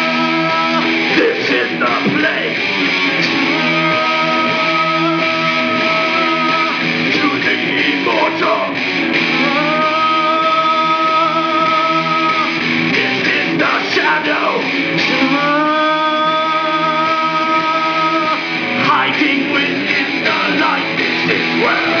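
Live solo rock performance: electric guitar strummed steadily while a man sings, holding long notes four times over the guitar.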